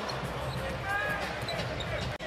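Basketball arena sound during live play: steady crowd noise with a short, high sneaker squeak on the hardwood about a second in.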